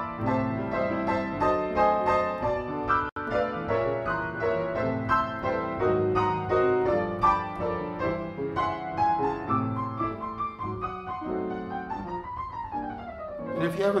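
Piano improvised freely, with chords under single melody notes at a moderate, unhurried pace. There is a momentary dropout about three seconds in, and near the end a tone slides up and back down.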